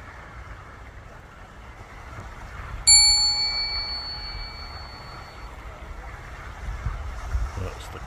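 A single bright bell ding about three seconds in, ringing out and fading over a second or two. It is an achievement-style chime edited in with an on-screen checkmark, over a steady outdoor background hiss and low rumble.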